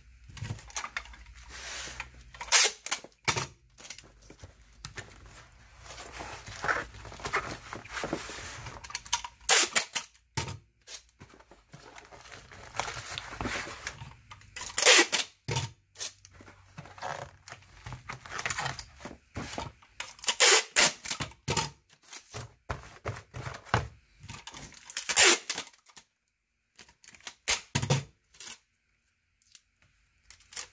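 Clear packing tape being pulled off the roll and torn off several times, each pull a short, loud rip.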